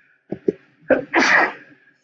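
A man sneezing once about a second in, preceded by two short catches of breath.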